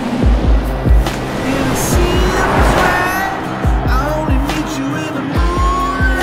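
Music with a steady beat, over which a Jaguar I-PACE electric SUV's tyres squeal and skid, loudest in the middle.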